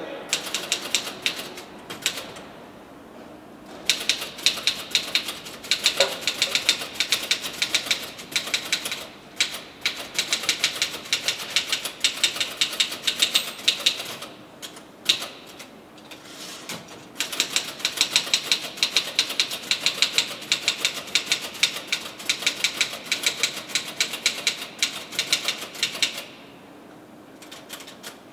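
Fast typing on a keyboard: long runs of rapid key clicks broken by a few short pauses.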